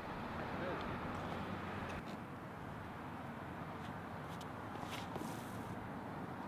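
Faint, steady outdoor background noise with a few faint, short clicks.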